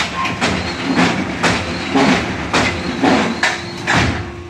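HBY6-10 interlocking clay/soil cement brick press running, with a steady hum from its hydraulic power unit under loud clattering knocks about twice a second as the machine cycles and bricks are pushed out onto the table.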